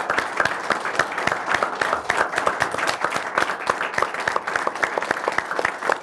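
An audience applauding: many people clapping together, a dense, steady clatter of claps.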